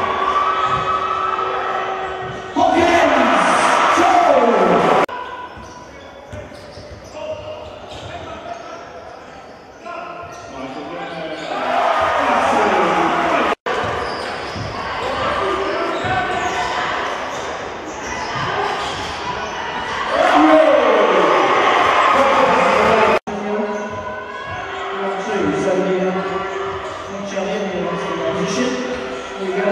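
Basketball game sound in a reverberant sports hall: a ball bouncing on the court among voices and crowd noise. The sound cuts off abruptly twice as one clip gives way to the next.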